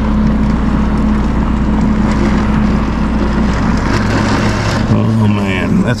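Severe thunderstorm wind and heavy rain: a loud, steady rush that swells in the upper range about four seconds in, heard from indoors behind rain-streaked glass, over a low steady hum.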